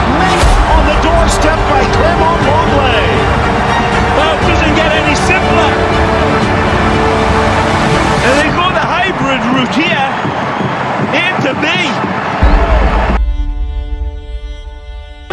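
Backing music mixed under stadium crowd noise with many voices shouting over one another. Near the end the crowd drops out with a deep bass hit, leaving the music alone.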